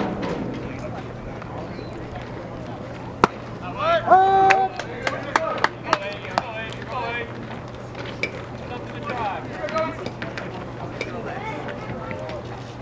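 Outdoor baseball game sounds. About three seconds in, a single sharp pop like a pitched baseball smacking into the catcher's mitt is followed by a loud drawn-out shout. Scattered sharp claps and voices come after.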